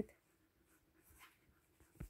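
Near silence: room tone with a few faint, soft rustles.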